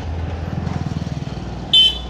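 A motor vehicle engine running close by, a steady low rumble with a fast, even pulse. A short, loud, high-pitched beep sounds near the end.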